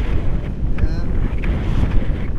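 Airflow from a paraglider in flight buffeting the action camera's microphone, a loud, gusty rumble.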